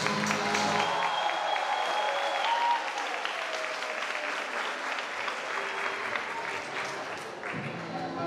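Audience applauding, with a few voices calling out, after a song ends about a second in; music starts again near the end.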